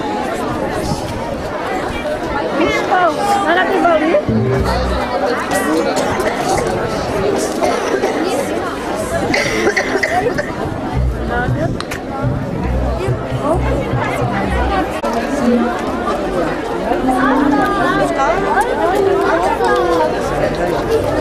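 A crowd of many people talking at once, with music playing underneath. The music's steady low notes are strongest from about four seconds in until past the middle.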